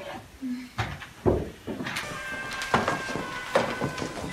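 Wine glasses clinking together in a toast: several light clinks spread over the few seconds, with a thin ringing tone hanging on through the second half.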